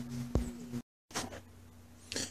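Faint steady electrical hum with a single sharp click about a third of a second in; the sound drops out completely for a moment just before the middle.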